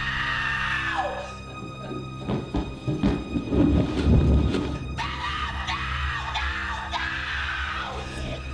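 A woman screaming, one long scream at the start and another from about five seconds in, over a steady, low horror-film score, with a cluster of thuds in between.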